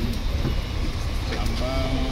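Steady low rumble of a bus engine heard from inside the passenger cabin, with a voice starting to speak near the end.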